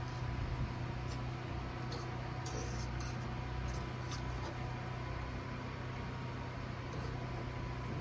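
Sausages sizzling in a frying pan on a Coleman camp stove, over the steady hiss and low rumble of its burners. A few light clicks and pops come in the first half.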